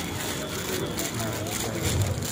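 Indistinct voices of people talking nearby over a steady background hum and noise, with no clear words.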